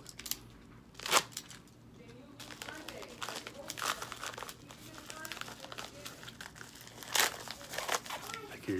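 Trading-card mailer packaging being handled and opened by hand: irregular paper-and-plastic crinkling, with two louder sharp crackles about a second in and near the end.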